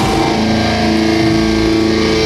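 Live rock band playing loud amplified electric guitars and bass guitar, holding sustained distorted chords.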